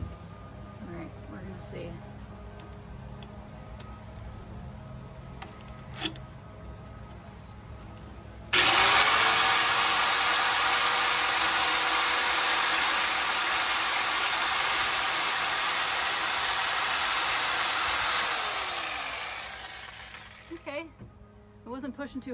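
A Rotorazer compact multi-purpose saw starts with a quick rising whine about eight seconds in. It then cuts through an old weathered wooden post for about ten seconds, and its motor winds down near the end.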